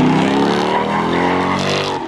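A car engine held at high revs while the car spins a donut, its pitch sagging slowly, with tyre noise rising near the end.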